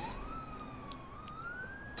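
Police car siren wailing, a single thin tone sliding up and down in slow sweeps.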